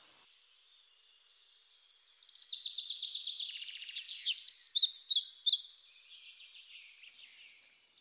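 Small songbird singing high-pitched notes: a rapid trill about two seconds in, then a run of louder separate chirps, fading to faint calls near the end.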